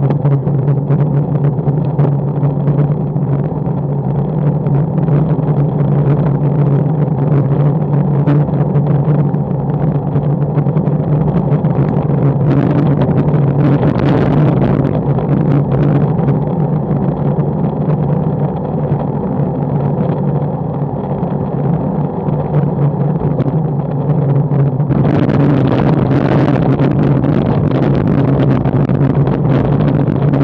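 Wind rushing over a bike-mounted action camera's microphone, with tyre and road rumble from a road bike freewheeling downhill at speed and frequent small knocks as the bike rattles over the surface. About 25 seconds in, the noise turns harsher and hissier as the tyres roll onto cobblestone paving.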